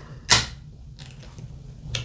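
A just-opened beer can being handled: one short, sharp rustle about a third of a second in, then a small click near the end.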